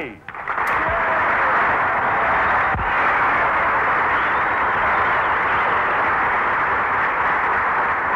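A studio audience applauding steadily, heard through a thin, old radio broadcast recording.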